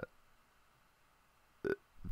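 A pause in a man's speech: near silence for most of it, then a short vocal syllable near the end.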